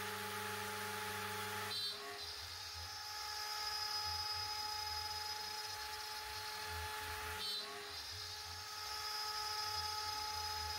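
CNC router spindle running as its small end mill cuts a roughing pass through aluminium plate, a steady motor whine with a high-pitched note. The sound shifts abruptly about two seconds in and again about seven and a half seconds in.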